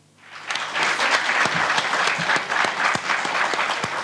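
Studio audience applauding, the clapping swelling up out of silence in the first half-second and then carrying on steadily.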